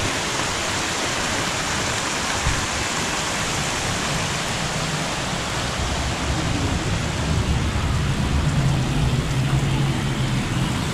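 Steady hiss of rushing, falling water from garden cascades, with a low hum rising over the last few seconds.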